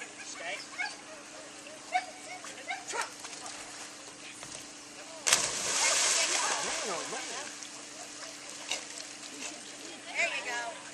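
A Chesapeake Bay Retriever hits the water of a dock-diving pool with a sudden loud splash about five seconds in. The spray and sloshing carry on for a couple of seconds.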